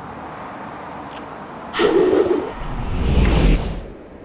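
Low, steady outdoor background noise, then about two seconds in a sudden rush of noise that swells into a deep whoosh and cuts off just before the end.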